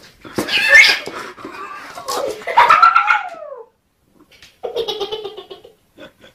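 Kitten yowling and meowing: a harsh cry about half a second in, then a longer call that falls in pitch, then a shorter, steadier cry near the end.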